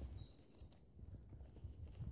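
Faint footsteps of a person walking along a woodland track.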